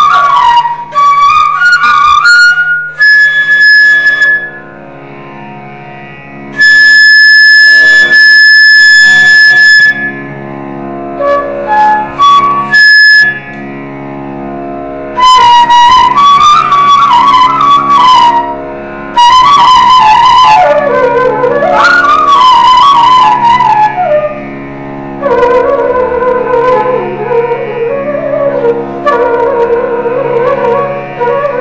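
Carnatic flute playing raga Malayamarutham over a steady drone. The melody slides and wavers between notes, with long held high notes in the first ten seconds and then lower, flowing phrases.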